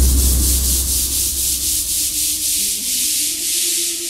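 Electronic dance music in a breakdown: the kick drum drops out, a deep bass note fades away over the first couple of seconds, and a pulsing hiss sweeps upward in the top end. Soft sustained synth tones come in about halfway through.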